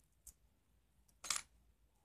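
Faint light clicks, then one brief metallic clink about a second and a quarter in, as a ball bearing and small brass cabinet hinges are handled in the fingers.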